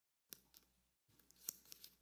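Faint rustling and a few soft clicks of thin Bible pages being turned by hand, amid near silence.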